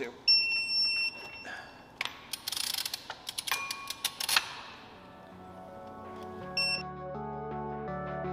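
Electronic beeps, one lasting about a second near the start and a shorter one later, from a digital torque wrench tightening flywheel bolts, signalling that the set torque has been reached. In between come sharp metallic clicks and a ratcheting rasp from the wrench. Background music fades in over the second half.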